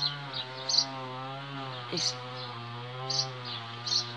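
A steady low buzzing drone whose pitch wavers slightly, typical of a large flying insect such as a bumblebee hovering close to the microphone. A single short spoken word comes about halfway through.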